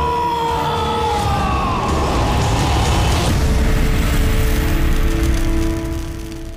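A man's long, drawn-out scream, falling slowly in pitch and fading out about two seconds in. A low rumble takes over, under film score music holding sustained notes.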